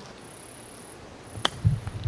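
High-pitched insect buzzing in repeated stretches of about 0.7 s, and about one and a half seconds in a single sharp click of a golf club striking the ball on a chip shot, followed by a low rumble.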